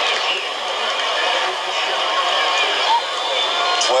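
Football stadium crowd noise: many voices talking and shouting at once in a steady wash.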